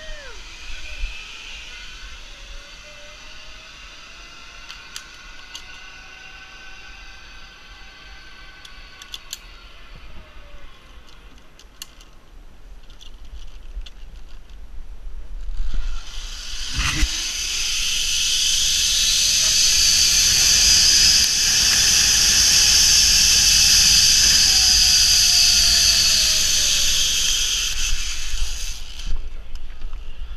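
Zip-line trolley pulleys running along a steel cable: a loud hiss with a whine that rises in pitch as the rider speeds up and falls as he slows, then stops suddenly near the end. A knock comes just after the ride starts. Earlier comes a fainter whine that rises and falls the same way, from the cable carrying the rider ahead.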